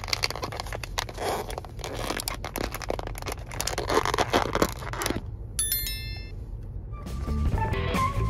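Crackling and clicking of a thin plastic deli container's lid being handled and pried open, over low background music. A short high chime sounds a little past the middle, and guitar music comes in near the end.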